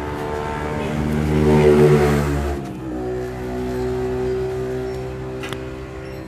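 A motor vehicle engine running with a steady note, growing louder to a peak about two seconds in as it passes close by, then the note changes abruptly and a steadier engine note carries on.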